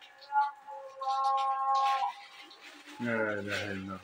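Distant call to prayer chanted over a mosque loudspeaker, with long held notes. Near the end a man's low voice close by cuts in.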